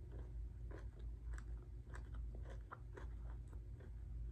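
A person chewing fried food with the mouth closed, close to the microphone: soft crunches and wet mouth clicks several times a second, over a steady low hum.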